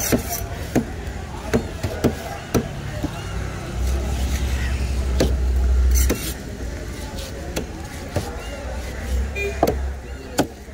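Heavy curved knife chopping a Spanish mackerel (seer fish) into steaks, the blade knocking through the fish onto a wooden board in sharp strokes at irregular intervals. A low rumble swells up from about four to six seconds in.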